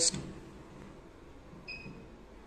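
Quiet room tone with one short, faint electronic beep near the end.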